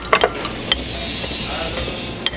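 A few light clicks, then a steady hiss for the second half, like café kitchen or machine noise.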